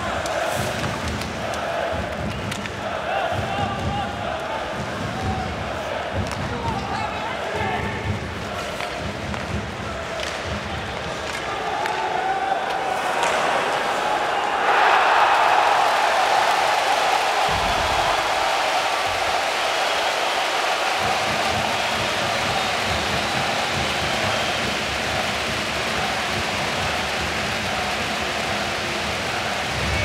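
Ice hockey arena during play, with thuds of pucks, sticks and bodies against the boards under a murmuring crowd. About fifteen seconds in, the crowd breaks into loud cheering at a goal, and the cheering carries on.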